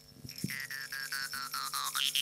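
Altai folk music: a steady low drone carrying a thin, high whistling overtone melody that slides down near the end, over fast, even rhythmic strokes about seven a second. It swells up from faint in the first half-second.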